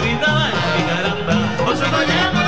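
Live dance orchestra playing cumbia: a steady dance groove with a stepping bass line under brighter instruments.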